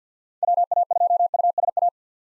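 Morse code at 50 words per minute: a single steady tone keyed in very fast dots and dashes for about one and a half seconds. It spells out the amateur radio callsign WA2USA, repeated right after it was spoken.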